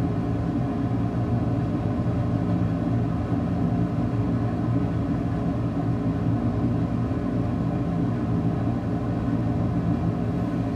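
Steady low hum of a small electric motor or fan, running at an even level throughout.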